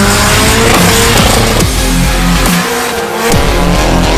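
Drift car engine revving, its pitch climbing in the first second and again near the end, as the car slides sideways on a wet track, mixed with loud music with a heavy beat.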